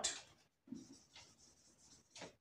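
Marker pen writing on a whiteboard: a few faint, short strokes of the felt tip rubbing across the board.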